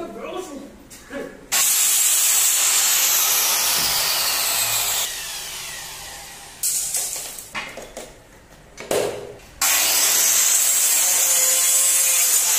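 Handheld electric circular saw cutting through PVC profile twice. The first cut starts abruptly, then the blade spins down and fades. After a few knocks of handling, a second cut starts near the end.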